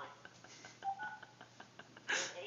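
A short touch-tone keypad beep about a second in, as a key is pressed on a phone, with a few faint clicks around it.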